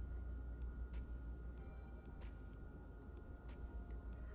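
Quiet room tone: a low hum with faint, evenly spaced clicks about every second and a quarter.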